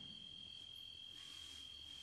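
Faint, steady high-pitched trill of crickets in an otherwise near-silent pause, with a low hum underneath.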